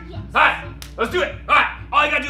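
Short shouted vocal bursts, four in about two seconds, over background music with a steady beat.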